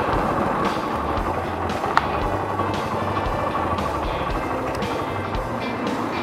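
Background music with a stepping bass line, over steady vehicle and road noise, with one sharp click about two seconds in.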